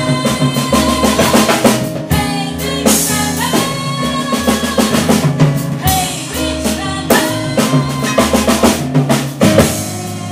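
Live band playing an instrumental passage: a drum kit beat with snare and rimshot strokes over low bass notes and electric keyboard chords.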